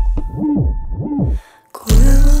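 Experimental electronic club music: two hooting, rising-and-falling synth or processed-vocal glides over a deep bass tail, a brief drop to near silence, then a heavy bass hit just before the end.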